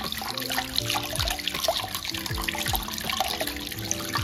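Tap running over a child's soapy hands as they rub them together in a sink. Behind it plays music with a melody and regular deep drum hits that fall in pitch.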